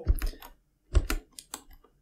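Several scattered clicks of computer keyboard keys, with a short pause in the middle.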